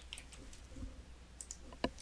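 Computer keyboard keystrokes and mouse clicks: a few scattered light clicks, with a sharper, louder click near the end.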